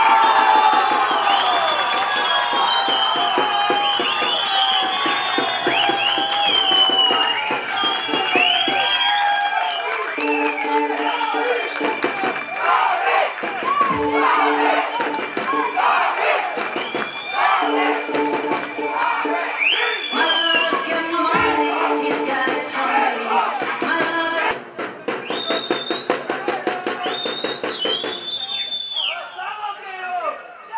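Football crowd cheering and shouting after a goal, with high shouts and whistles gliding over the din. The noise thins out near the end.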